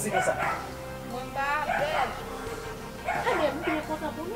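People talking in short exchanges over a steady background music bed.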